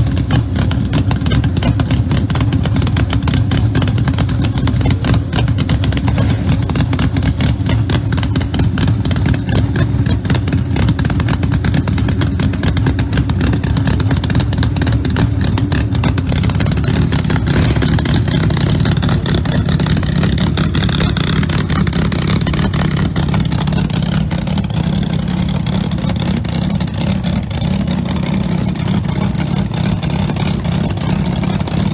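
Nitrous-fed Pat Musi V8 of a Pro Mod drag car idling loudly through open zoomie headers, a fast, choppy rumble. Roughly halfway through the engine note steps up a little and holds there.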